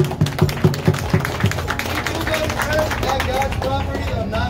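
Live street busking: an electronic keyboard with a singing voice over it, and a run of sharp rhythmic beats, about four a second, in the first second and a half.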